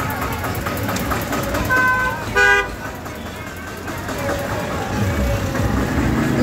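A vehicle horn gives one short toot about two and a half seconds in, the loudest sound here, over a steady background of street noise and people's voices.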